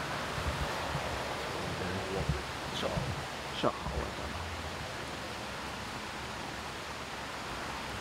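Steady outdoor background noise, an even hiss with some low wind rumble on the microphone, with one brief exclaimed word a few seconds in.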